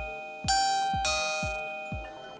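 Doorbell M10 video doorbell's built-in speaker playing its two-note ding-dong chime after its call button is pressed. The first chime is still fading at the start, and a second ding-dong rings out about half a second and one second in, both notes ringing on and slowly dying away.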